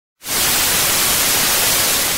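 Television static: a loud, steady hiss of white noise from a detuned TV screen, used as an intro sound effect. It cuts in suddenly just after the start.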